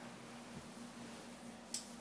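Faint room tone with a steady low hum, broken by a single sharp click near the end as a light switch is flicked off and the room goes dark.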